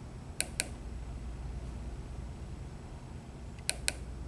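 Two pairs of quick clicks, one about half a second in and one near the end, from the buttons of a handheld blood glucose meter pressed to scroll through its stored readings, over a steady low hum of room noise.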